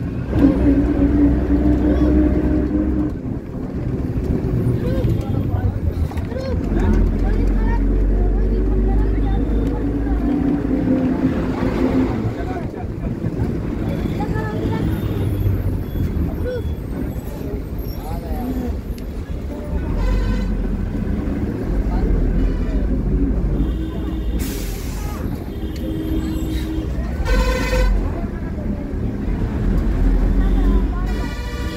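Busy street sounds: motor vehicles running past and horns honking several times in the second half, with people's voices around.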